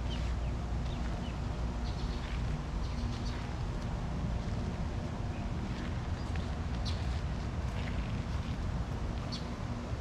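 Outdoor ambience of scattered short bird chirps over a steady low rumble of wind on the microphone, with a faint steady hum underneath.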